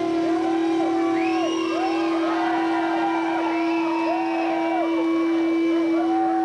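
A live rock band's droning instrumental passage: one steady note held underneath while swooping notes glide up, hold and slide back down over it again and again.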